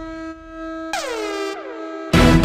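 Soundtrack music: a held horn-like note, then a swooping downward pitch-drop effect about a second in, repeated once more shortly after.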